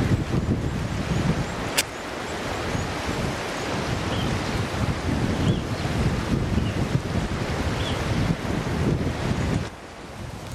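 Wind buffeting the microphone in uneven gusts over a steady rush of outdoor noise, with one sharp click about two seconds in and a few faint, short high chirps in the middle.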